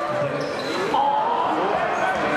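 Basketball game play in a sports hall: a ball bouncing and sneakers squeaking in short gliding chirps on the court floor, with voices from players and spectators.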